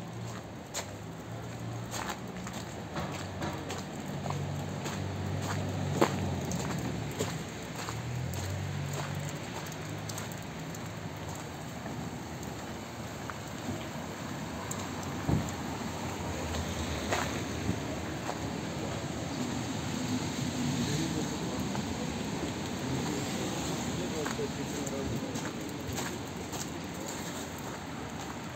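City street sound heard while walking: scattered sharp clicks and steps on wet pavement, voices of passers-by, and traffic, with a low hum through roughly the first ten seconds.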